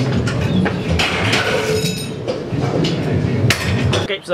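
Gym noise with repeated metallic clinks and knocks of weights and machine plates, one sharp clank near the end.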